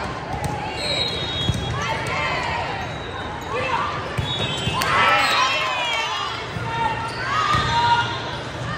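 Din of a busy indoor volleyball tournament hall: many overlapping shouts and chatter from players and spectators, with repeated thuds of volleyballs being struck and bouncing on the courts. It grows loudest about five seconds in, around a spike at the net.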